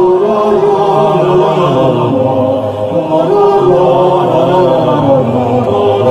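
Men's voices singing long held notes over a string orchestra, changing pitch about once a second.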